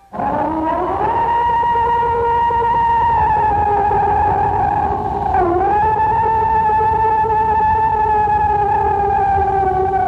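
A recording that some experts claim is a Bigfoot scream: a long, high, held wailing call. It rises in pitch at the start, holds, dips and breaks briefly about halfway through, then rises again and holds, slowly sinking in pitch.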